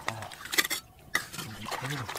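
Metal hand tool scraping and clinking against stones in shallow muddy water, with two sharp knocks, one about half a second in and one just after a second, and some splashing.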